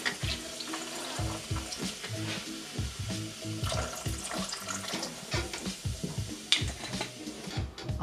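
Liquid pouring from a glass bottle onto ice cubes in a plastic blender jug, a steady splashing pour. Background music with a regular beat plays under it.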